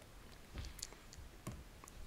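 A few faint, short clicks scattered over quiet room tone.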